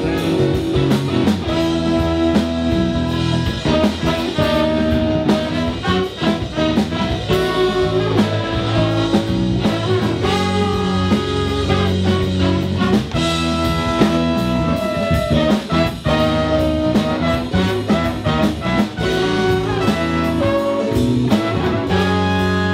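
A live band playing an instrumental passage: a horn section with trombone over electric guitar, bass and drums.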